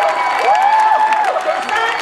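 A voice shouting two long, drawn-out calls, each rising, holding and falling, over a crowd cheering and clapping.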